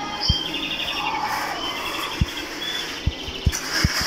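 Birds chirping in short rippling trills over a steady low hum, with a few short dull thumps, several close together near the end.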